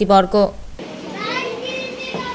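A woman's voice briefly, then after a cut, the hubbub of many children talking at once in a room.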